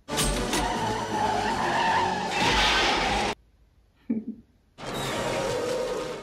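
Film soundtrack: an armoured vehicle's engine racing and its tyres skidding, under a film score. It cuts off suddenly a little over three seconds in and comes back loud nearly two seconds later.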